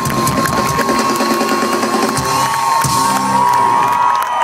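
Large concert crowd cheering and screaming, with the live band's music playing underneath until it drops away near the end.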